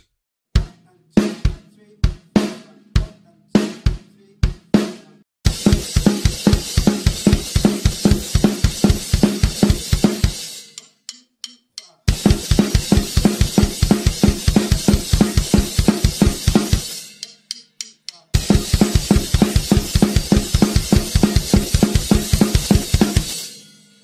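A drum kit playing the punk D-beat, a fast bass drum and snare pattern under a constant wash of cymbals. It opens with a few separate hits, then plays three runs of the beat with short breaks between them.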